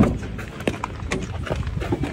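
Car door latch clicking open as the outside handle is pulled, followed by a few lighter clicks and knocks as the door swings open.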